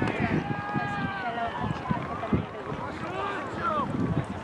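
Several voices shouting and calling out at once during a soccer match, overlapping so that no clear words come through.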